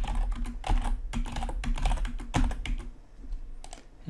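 Computer keyboard typing in quick runs of keystrokes, thinning out after about two and a half seconds, with a couple of separate clicks near the end.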